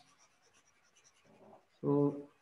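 Very faint scratching and tapping of a stylus on a writing surface while handwritten on-screen notes are erased, ending with a man saying "so".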